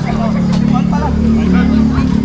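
A motor engine running with a steady low hum, joined by a deeper rumble about a second in, under background voices. A sharp knock comes about half a second in.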